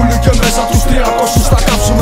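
Hip hop track: a bass-heavy beat with regular drum hits under a held synth note, with rapping over it.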